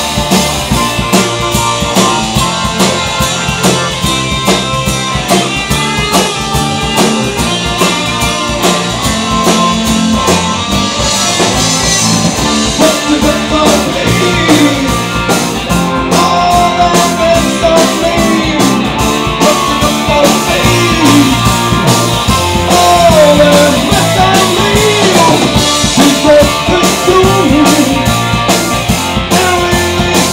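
Live rock band playing an instrumental passage at full volume: electric guitar, bass and drum kit keeping a steady driving beat. From about halfway through, a lead line rises and falls with bent notes over the band.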